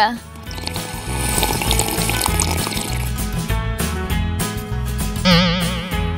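Background music with a steady beat, with a drink sucked up through a plastic straw in the first few seconds; near the end a short wavering, warbling tone.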